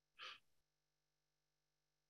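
A single brief, faint intake of breath near the start, like a small gasp; otherwise near silence.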